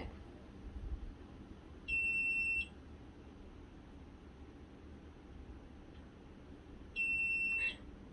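Low-water alarm of a Mudeela self-watering plant pot beeping twice, each a single high-pitched beep under a second long, about five seconds apart. It sounds because the water reservoir is empty.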